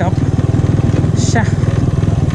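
Bajaj Pulsar 135's single-cylinder four-stroke engine running at a steady low speed under way, its exhaust note even and pulsing with no revving. The bike has a newly changed exhaust.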